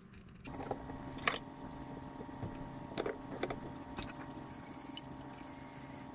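Small clicks and rattles of plastic and metal parts as a 3D-printer hotend is pushed and fitted into the printer's toolhead, over a steady hum.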